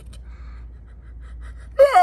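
A man crying: a few faint gasping breaths, then a loud wailing sob bursts out near the end.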